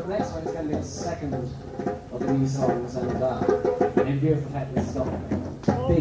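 Indistinct talking close to the recorder over intermittent percussion knocks on hand-played found-object instruments, with a steady low hum underneath.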